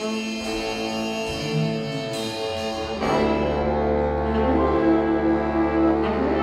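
Jazz big band playing a held horn passage; about halfway through the full band comes in louder over a low bass line.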